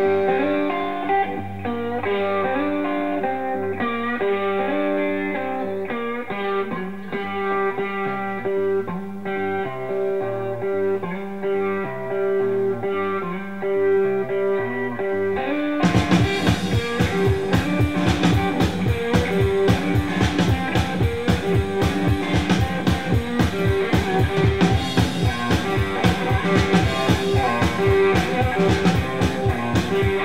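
Live Mississippi hill country blues: a hollow-body electric guitar plays a repeating riff alone, and a drum kit joins about halfway through with a steady, driving beat.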